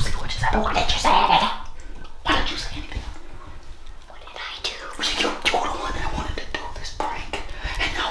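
Quiet, partly whispered talk between a man and a young girl in a small room.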